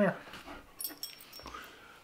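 Quiet jingle of a dog's metal collar tag about a second in, with faint clicks and rustling as a husky mix is pulled close.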